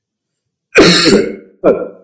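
A man coughing to clear his throat: silence, then one hard cough about three-quarters of a second in and a second, shorter one near the end.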